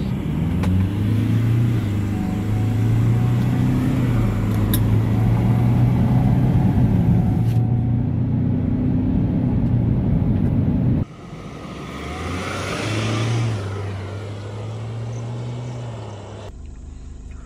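Ford Endeavour's diesel engine under full-throttle acceleration from a standstill, heard inside the cabin, its pitch climbing and dropping back as the automatic gearbox upshifts. About eleven seconds in the sound cuts off and the SUV is heard from outside driving along the road, its engine and tyre noise swelling and fading.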